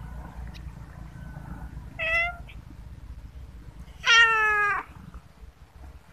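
A cat meowing twice: a short meow about two seconds in, then a longer, louder meow with a slightly falling pitch about four seconds in.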